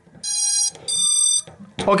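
Startup beeps from a freshly powered FPV drone's brushless motors, driven by its BLHeli_32 ESCs when the LiPo is connected: two long, steady electronic beeps of about half a second each.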